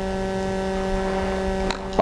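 A man's voice holding one long hesitation hum on a single steady pitch, ending with a small click just before he speaks again.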